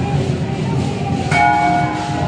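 A bell struck once just past halfway, its several tones ringing on clearly over a steady background din.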